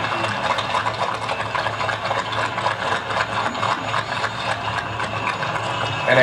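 Soundtrack of an archival film played through a hall's loudspeakers: a dense, even rattle of fine clicks over a steady low hum, with no voice.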